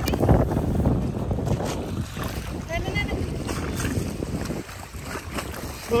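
Wind buffeting a phone microphone, with handling rustle and choppy bay water washing against a rocky shoreline; a short voice cuts in about three seconds in.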